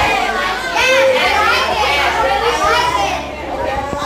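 A classroom of young teenage students talking and laughing all at once, many voices overlapping into a loud hubbub.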